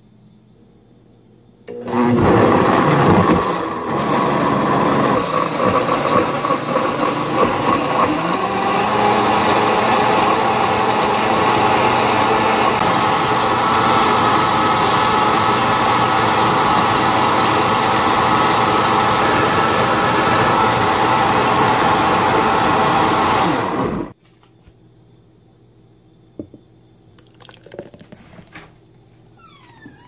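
Blendtec blender blending frozen fruit and carrots into a smoothie. The motor starts about two seconds in with a loud, rough chopping of the frozen chunks, settles into a steady whir as the mix turns smooth, and cuts off abruptly about six seconds before the end.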